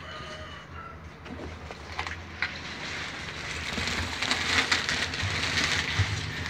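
Burmese python hissing: a breathy hiss that builds from about halfway through and is loudest near the end.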